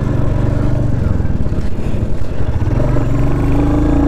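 Royal Enfield Hunter 350's single-cylinder engine running steadily while the motorcycle cruises along the road, heard from the rider's seat.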